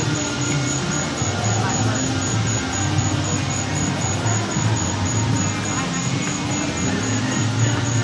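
Steady outdoor background noise with indistinct voices and music underneath.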